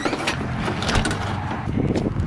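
A front door is unlatched by its handle and swung open, followed by a steady rush of noise with a low rumble underneath.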